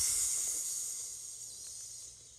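A high hiss that begins suddenly and fades away over about two seconds.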